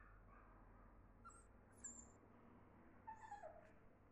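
Puppy whimpering faintly: a couple of brief high squeaks about a second and a half in, then a short whine that falls in pitch about three seconds in.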